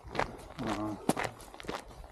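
Brisk footsteps on a gravel path: a few sharp steps.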